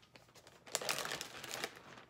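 Crinkling rustle of a cross-stitch project being handled, lasting about a second from a little after the start.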